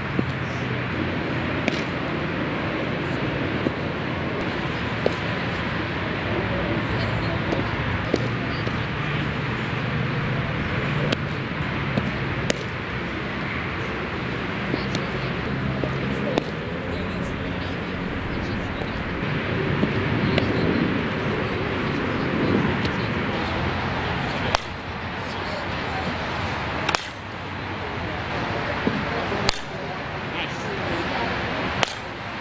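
A softball smacking into a catcher's mitt, a sharp single pop every few seconds, over steady background chatter of voices around the field.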